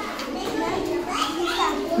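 Indistinct chatter of several young children talking at once.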